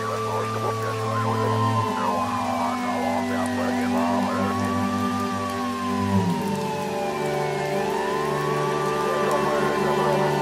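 Instrumental passage of a Persian pop song: sustained synth bass and chords that change about two seconds in and again past six seconds, under a slow rising-and-falling gliding tone that repeats about every four seconds.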